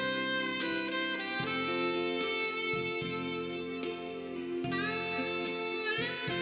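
Recorded instrumental music from a Korean trot song: a held, wavering melody line over sustained backing chords.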